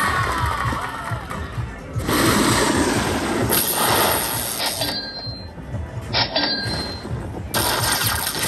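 Aristocrat High Stakes Lightning Link slot machine playing its win celebration music and sound effects while the win meter counts up, with a few short high chimes and loud noisy stretches about two seconds in and near the end.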